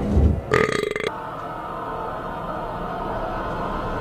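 Horror-film soundtrack: a heavy low thud at the start, then a loud, rough, guttural voice-like growl lasting about half a second, then a low, steady, eerie music drone.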